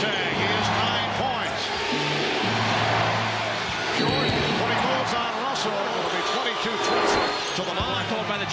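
Basketball game sound: steady arena crowd noise, with a ball dribbling and short sneaker squeaks on the hardwood. Underneath runs music with sustained low bass notes that change every second or two.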